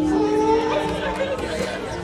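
Human voice through a microphone imitating synthesiser sounds: a steady held tone that cuts off about a second and a half in, with a second tone sliding upward over it.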